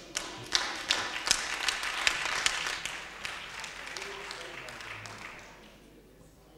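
Applause from part of a council chamber: a crowd of hand claps that starts right after a speech ends, is strongest for the first few seconds, then thins out and dies away.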